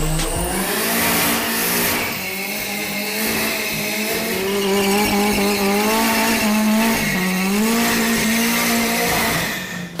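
Hyundai Genesis Coupe doing a burnout: the engine held at high, steady revs while the rear tyres spin and squeal on concrete, the revs dipping briefly about seven seconds in.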